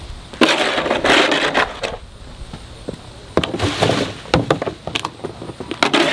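Plastic snow shovel scraping along a concrete driveway as it scoops up clumps of grass and dirt scraped from under a mower deck: two long gritty scrapes with a few knocks in the second, and a third starting near the end.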